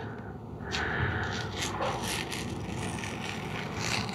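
Masking tape being peeled slowly off the edge of damp watercolour paper: a scratchy peeling noise that starts under a second in and keeps going.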